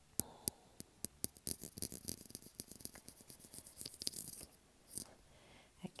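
Paintbrush bristles scrubbing acrylic paint onto paper in quick, short, scratchy strokes, after a few light clicks in the first second.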